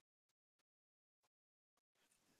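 Near silence: a digitally gated pause between sentences of speech.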